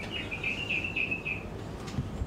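A bird chirping: a quick run of short high notes at much the same pitch, lasting about a second and a half, over faint room noise.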